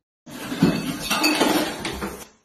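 Dishes clinking and clattering as crockery is lifted out of a dishwasher rack.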